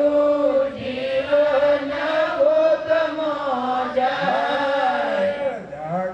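A man chanting a devotional song into a microphone, with long held notes that slide up and down.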